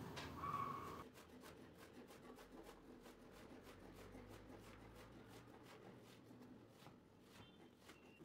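Near silence, with only a brief faint tone in the first second.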